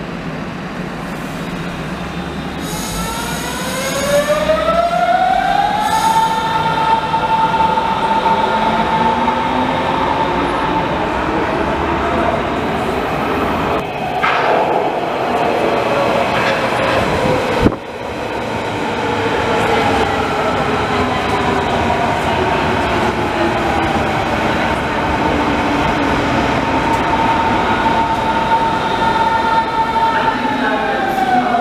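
Berlin S-Bahn class 481 electric trains: the traction motors' electric whine rises in pitch as a train pulls away, holds a steady high note, then falls as a train brakes into the platform, over the rumble of wheels on rails. A single sharp click comes a little past the middle.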